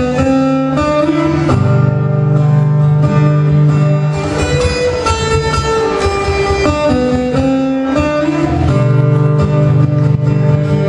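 Steel-string acoustic guitar playing a slow instrumental passage: single picked notes of a melody ringing over held bass notes.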